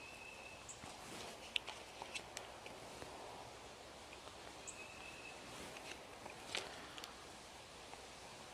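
Faint outdoor background with two brief, distant bird chirps and a few soft ticks from pulled pork being handled on a cutting board.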